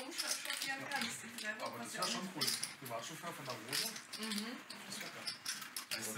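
Faint background chatter from players around a poker table, with scattered light clicks and clinks of poker chips being handled.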